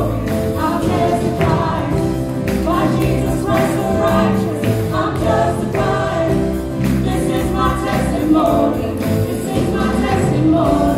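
Live gospel praise music: a woman singing lead with other voices joining in, over acoustic guitar, continuous throughout.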